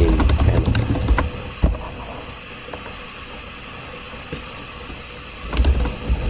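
Typing on a computer keyboard: scattered keystrokes, bunched in the first couple of seconds with some low thumps, then a few single keys later.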